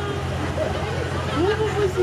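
Tour train's engine running with a steady low drone as the passenger wagon rolls along, with people talking over it.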